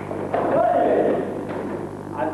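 A man's loud shout about a second long, its pitch rising and then falling, with a thud as it begins and another soon after. A steady low drone runs underneath.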